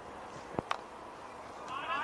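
Cricket bat striking the ball: one sharp crack a little over half a second in, with a lighter click just after it, over faint open-field ambience.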